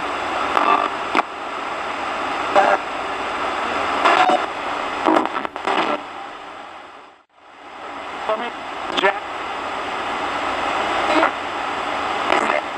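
RadioShack 20-125 portable AM/FM/shortwave radio rapidly sweeping the stations, as used for a ghost box: continuous static broken about once a second by split-second fragments of broadcast voices. The sound cuts out briefly about seven seconds in.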